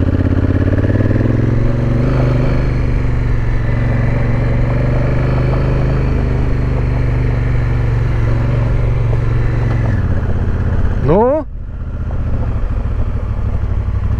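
Honda CRF1000 Africa Twin's parallel-twin engine running steadily under way on a gravel road. It is loud and even, and eases off and drops in level near the end.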